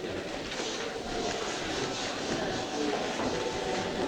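Indistinct chatter of many people talking at once, a steady murmur with no single voice standing out.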